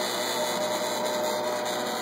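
MakerBot Replicator 5th generation 3D printer running as a print starts and the extruder heats: a steady whir with a thin, faint whine that fades near the end.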